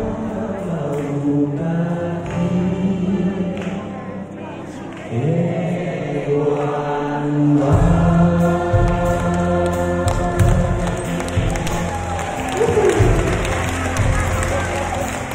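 A man singing a song live into a microphone, backed by a band with electric guitars and keyboard; the accompaniment grows fuller and heavier in the low end about eight seconds in.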